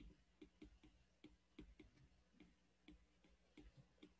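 Faint, irregular ticks of a stylus tip tapping on an iPad Pro's glass screen during handwriting, a few taps a second.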